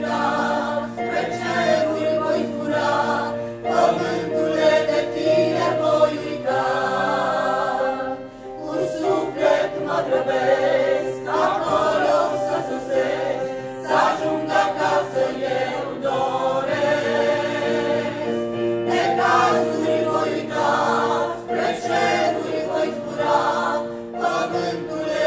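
A small mixed church choir of women and men singing a hymn in Romanian, holding long notes.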